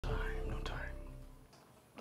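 Soft, hushed speech over a few held music notes and a low hum, starting abruptly and fading out to near silence after about a second and a half.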